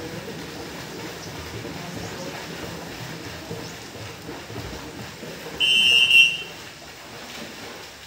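Distant splashing of children swimming in an outdoor pool, a steady wash of water noise. About five and a half seconds in, a short high-pitched shrill tone lasting about a second rises well above it.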